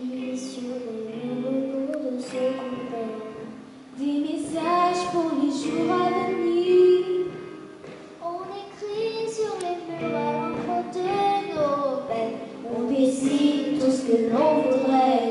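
A young girl singing a melody with held notes into a microphone, in phrases broken by short pauses about four and eight seconds in.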